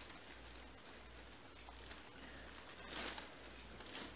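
Faint rustling of a velvet hoodie being unfolded and handled, a little louder for a moment about three seconds in, over a low steady hum.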